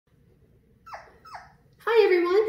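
Havanese puppy giving two short, high yips about half a second apart, each falling in pitch. A woman starts speaking just before the end.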